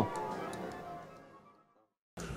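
Soft background music with a faint ticking beat, fading out to silence about a second and a half in.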